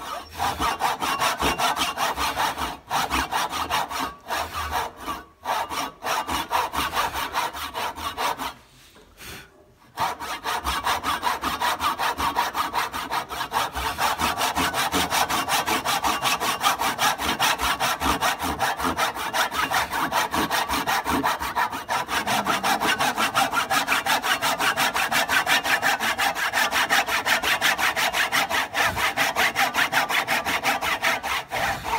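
Brass-backed dovetail saw cutting by hand into the end grain of a wooden board, a steady run of quick back-and-forth strokes. It stops briefly a few times early on, with the longest break about eight seconds in, then saws without pause. These are the joint's cuts, made on the waste side of the marked line.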